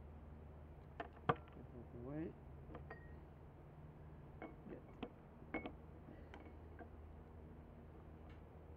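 A series of light, sharp clicks and clinks of a pen-type pH meter and a plastic stirring stick knocking against a glass jar, about ten in all, the loudest about a second in, a few with a brief ringing. A low steady hum lies underneath.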